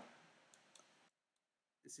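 Near silence with two faint computer mouse clicks about half a second in, a fraction of a second apart.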